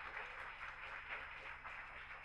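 Audience applauding, fading gradually.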